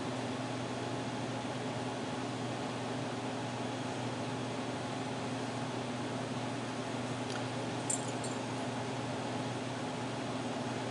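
Steady mechanical hum with a constant low drone, like a running fan or air-handling unit in a small room, and one faint light click about eight seconds in.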